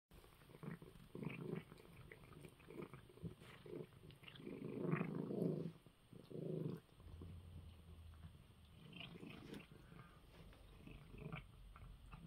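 A cat eating dry kibble from a bowl: irregular crunching and chewing, loudest for a couple of seconds around the middle.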